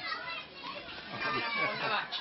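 Many voices talking over one another, children's voices among them: a room full of chatter.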